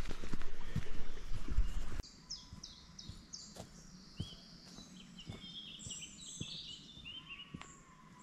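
Rumbling handling and wind noise on a handheld action camera's microphone for about two seconds, then an abrupt drop to quiet woodland with several birds singing in short, overlapping chirps and a few faint knocks.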